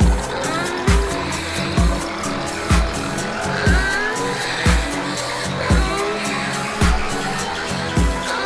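Electronic dance music from a DJ mix on a club sound system. A kick drum hits about once a second and is the loudest part, over fast ticking hi-hats and short sliding synth notes that bend up and down in pitch.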